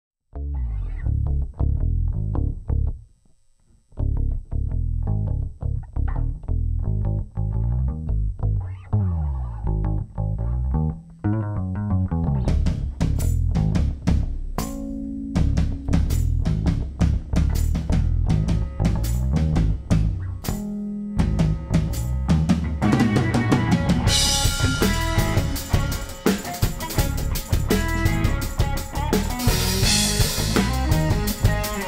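A live rock band plays an instrumental intro on drum kit and guitars. The music starts almost at once, breaks off briefly about three seconds in, then builds, growing fuller and louder over the last few seconds.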